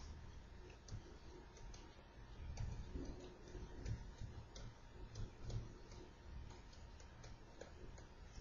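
Faint, irregular ticks and clicks of a stylus on a pen tablet as handwriting is written, over a low steady hum.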